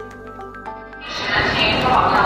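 Light background music with plucked notes, cut off about a second in by a sudden loud, echoing din of a busy railway station: voices and movement in a large hall.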